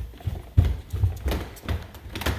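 Footsteps going down a wooden staircase covered with a carpet runner: a quick, even run of dull thuds, about three a second.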